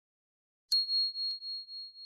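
Notification-bell 'ding' sound effect: a single high, pure ding struck about two-thirds of a second in, ringing on and wavering in level as it slowly fades. A faint click comes about halfway through the ring.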